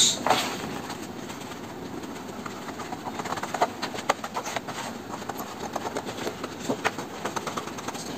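Scissors snipping through thick chart paper in a run of short, irregular snips that come more often from about three seconds in, with the sheet rustling as it is handled.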